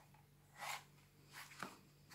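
Quiet handling of a paperback coloring book as it is closed: three short soft paper rustles over a faint steady hum.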